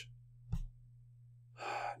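A man's quick intake of breath just before he speaks, coming after a single short click about half a second in, over a low steady electrical hum.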